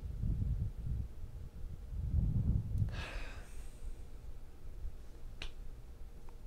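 Quiet pause in a small room: low rumbling thumps near the microphone, a short breathy rush about three seconds in, and a single sharp click near the end.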